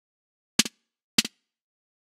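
Two short, sharp drum-sample hits about half a second apart, played from MASCHINE software as sounds are clicked in its browser and auto-loaded into a drum slot.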